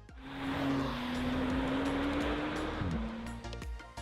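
A rushing whoosh with a steady low hum lasts about three seconds and drops in pitch as it fades out, over background music with a light regular beat.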